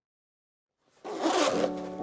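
Silence, then about a second in a zipper runs along a soft-sided carry case as it is unzipped, with background music coming in under it.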